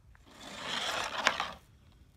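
Hockey stick blade and puck scraping across a plastic shooting board and pavement, swelling and fading over about a second, with one sharp click of the puck on the blade in the middle.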